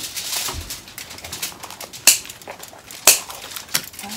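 Light rustling and handling noise with a few sharp clicks, the two loudest about a second apart.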